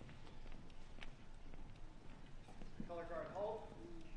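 Scattered footsteps and light taps on a hardwood gym floor as a color guard walks the flags into place, with a short voice about three seconds in.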